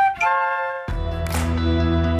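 Several concert flutes playing together on held notes after a count-in; about a second in, a backing music track with deep bass comes in under them.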